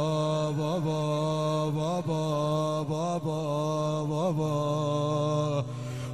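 A male reciter's long wordless 'aah' wail in a Shia lament chant, held on one pitch with small ornamental pitch turns about once a second. The held note breaks off a little before the end.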